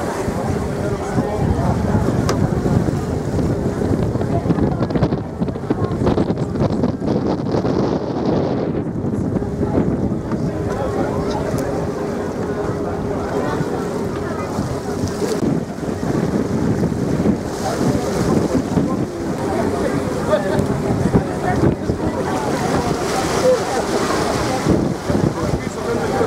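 Boat engine running steadily with a constant low hum, mixed with wind buffeting the microphone and the rush of water along the hull.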